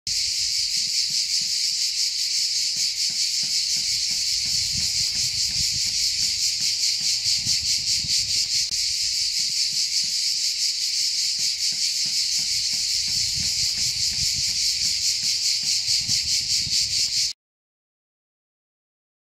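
Cicadas singing in a loud, continuous chorus, a high buzz with a fast pulsing flutter, which cuts off suddenly near the end.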